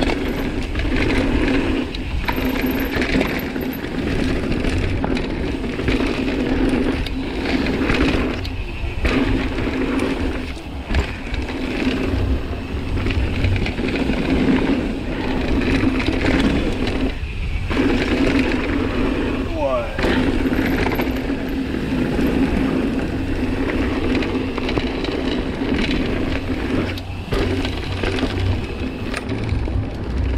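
Mountain bike descending a gravel trail: tyres rumbling and rattling over loose stones, with a steady buzz, typical of a coasting freehub, that drops out for moments every few seconds.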